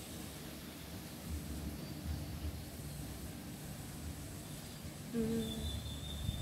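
Breeze buffeting the microphone: an uneven, gusting low rumble. A brief steady tone comes in about five seconds in.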